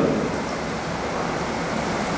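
Steady hiss of room and recording background noise with no distinct events, growing slightly louder toward the end.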